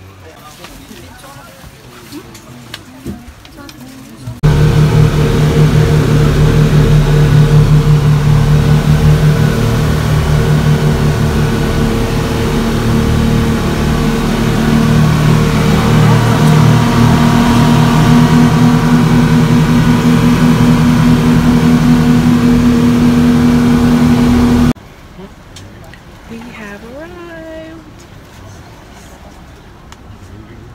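A fast boat's engines running at speed, a loud steady drone with a pulsing low hum, heard from inside the passenger cabin. It comes in suddenly a few seconds in, a higher hum joins about halfway, and it cuts off suddenly about 25 seconds in.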